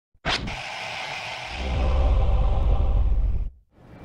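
Sound effect: a sudden hit about a quarter second in, then a noisy whooshing rush with a deep rumble that swells about a second and a half in and cuts off abruptly shortly before the end.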